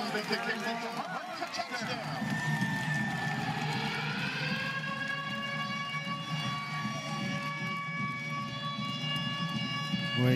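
Stadium sound after a touchdown: a murmur of voices at first, then from about two seconds in a long sustained tone of several pitches together, rising slightly and then held steady.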